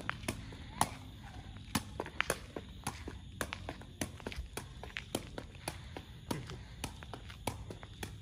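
Sepak takraw ball kicked repeatedly with the foot as it is juggled, sharp taps at an uneven pace of about two to three a second, mixed with footsteps on concrete.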